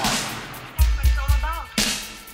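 Band recording: deep bass notes and sharp crashing bursts, the loudest at the start and near the end, with a wavering pitched line in the middle.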